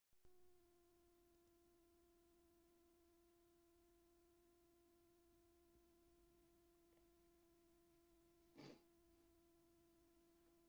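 Near silence with a faint steady tone underneath, one unchanging pitch with overtones, and a brief soft burst of noise near the end.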